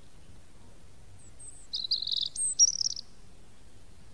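A small songbird gives a short burst of high chirps and trills, with one higher whistled note dropping in pitch, lasting about a second from just under two seconds in.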